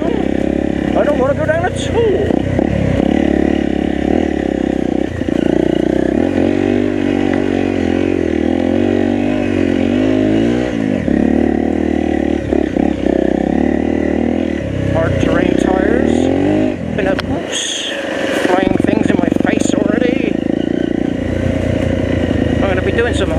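Enduro motorcycle engine on a rough trail, revving up and down repeatedly with the throttle, with occasional knocks and clatter from the bike over the ground. About three-quarters of the way through, the engine note briefly drops away before picking up again.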